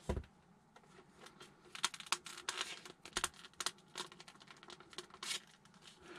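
Hand-handling of a small plastic radio-controlled model dinosaur as it is taken apart: a knock right at the start, then a run of light plastic clicks and rattles as parts are worked loose.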